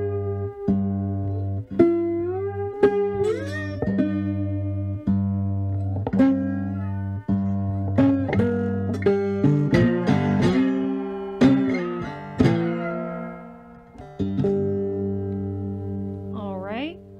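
Fretless three-string cigar box guitar fingerpicked with a slide: a steady thumbed bass note rings under plucked melody notes, with gliding slide pitches about two to four seconds in and a falling slide past the middle.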